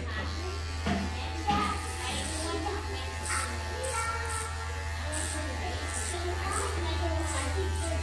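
Electric hair clippers running with a steady low buzz as they cut a boy's hair, under background music with a regular beat.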